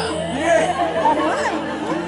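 Several voices talking over one another in a short burst of chatter.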